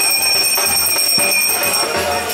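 A bell ringing continuously with a high, steady ring, stopping near the end. It rings over rhythmic festival percussion with jingles.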